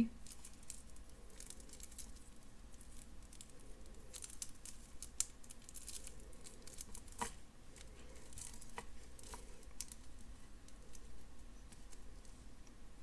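Faint, scattered light clicks and clinks of a beaded bracelet being handled: metal jump rings, a toggle clasp and faceted glass crystal beads knocking together, a couple of sharper clicks partway through.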